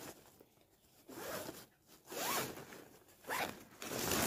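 Zipper on a mesh fabric packing cube being pulled in three short strokes.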